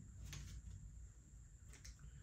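Near silence, with a few faint clicks as scissors and hands work at a stiff plastic blister pack: one about a third of a second in, and a couple near the end.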